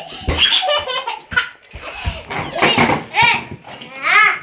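A toddler laughing and squealing in short, high-pitched bursts, with a quick pulsing laugh near the start.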